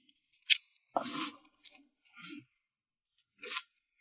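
A person chewing a mouthful of food close to the microphone: about five short, separate chewing and mouth sounds, some crunchy, with quiet gaps between them.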